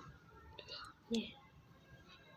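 Faint whispered speech, with one short, sharp, louder sound just over a second in.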